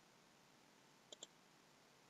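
Near silence, broken by a quick double click from a computer mouse about a second in.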